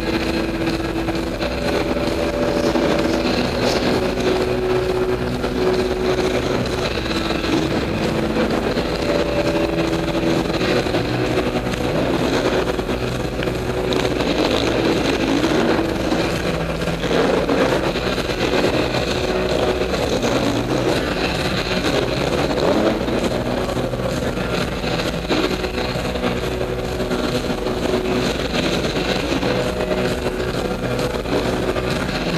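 Off-road motorcycle engines running on an endurocross track, holding steady notes that change pitch every few seconds, with rising and falling revs in the middle.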